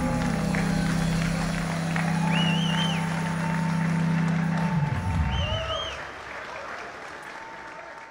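A live band holds its final chord and cuts it off about five seconds in, over steady audience applause. Two short warbling whistles ring out above the clapping.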